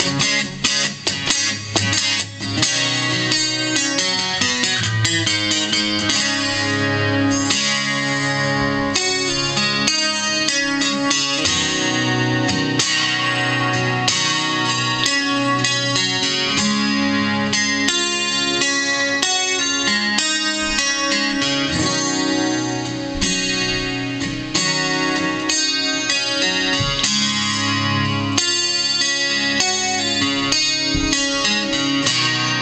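Steel-string acoustic guitar strummed hard and fast in an instrumental passage of a rock song, with no singing.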